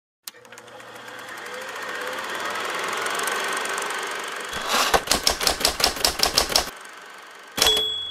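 Title-sequence sound effects: a swelling whoosh over the first few seconds, then a fast run of typewriter keystrokes, about seven a second, and near the end a hit followed by a high bell-like ding, like a typewriter's carriage-return bell.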